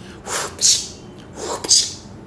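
A man voicing the whistle of a whip with his mouth: four short breathy swishes in two pairs.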